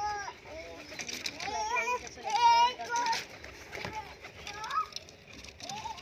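High-pitched children's voices calling and chattering in short bursts, the loudest call about two and a half seconds in.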